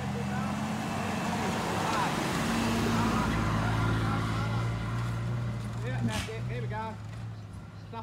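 Mitsubishi Challenger 4WD engine held at steady throttle as it climbs a soft sand hill, its note fading as the vehicle pulls away up the track. A sharp click sounds about six seconds in.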